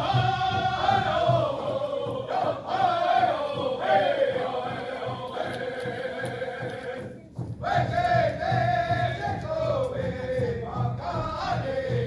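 Native American honor song sung by a group of singers in unison over a steady beat, the melody falling in long descending phrases. It breaks off briefly about seven seconds in, then starts a new phrase high again.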